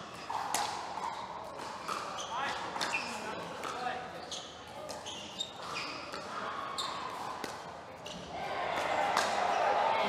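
Pickleball rally: paddles striking the plastic ball in a quick, irregular series of sharp pops, over a background of crowd voices that swells near the end.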